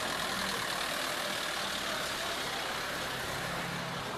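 Police van's engine running steadily as the van drives slowly past close by.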